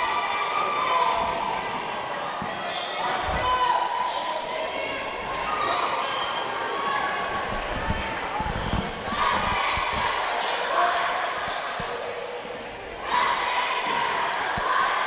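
A basketball dribbled on a hardwood gym floor, with a few low bounces standing out around three seconds in and again around eight seconds in. Players and spectators call out in the gym around them.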